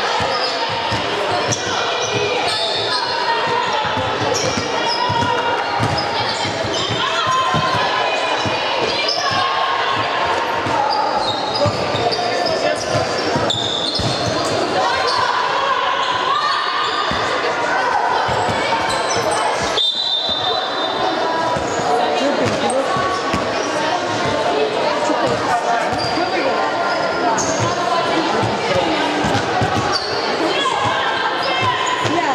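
A basketball bouncing again and again on a wooden court during play, amid players' and spectators' voices calling out, echoing in a large sports hall.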